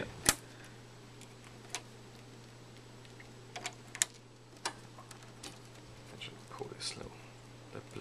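Scattered sharp plastic clicks and rattles of network cables and RJ45 plugs being handled at the back of a rack of routers, the loudest click just after the start. A steady low hum runs underneath.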